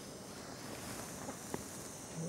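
Faint steady room noise, with a few soft clicks, the sharpest about one and a half seconds in.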